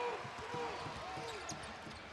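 A basketball dribbled on a hardwood court over the steady murmur of an arena crowd.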